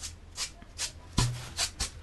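Brush strokes spreading epoxy hot-coat resin across a surfboard's bottom: a quick series of short swishes, about three a second.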